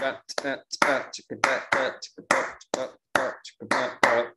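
A man vocalizing a syncopated rhythm as vocal percussion: a string of a dozen or so short, clipped syllables at uneven spacing, hits and gaps in a pattern like those of African-derived music.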